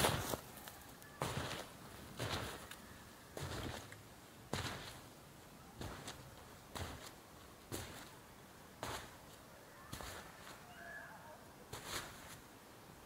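Footsteps trudging through deep snow, a crunching step about once a second.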